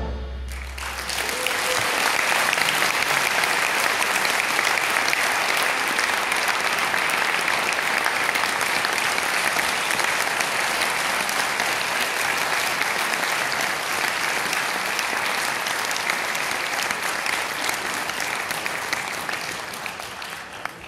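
Audience applauding in a concert hall, the clapping swelling within the first two seconds as the last of the concert band's final chord dies away, then holding steady and easing off slightly near the end.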